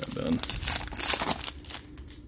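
Foil wrapper of a Panini Prizm football card pack being torn open and crinkled by gloved hands: a run of crackling rustles that thins out near the end as the cards come free.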